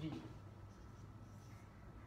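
Marker pen writing on a whiteboard: faint scratching strokes over a low steady hum.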